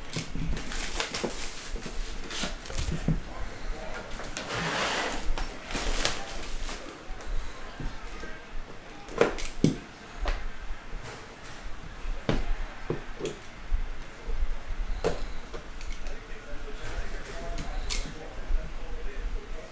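A sealed cardboard trading-card box being unwrapped and opened by hand: plastic shrink wrap crinkling and tearing for a second or two early on, then the cardboard lid and inner boxes tapping, knocking and sliding, with scattered sharp clicks.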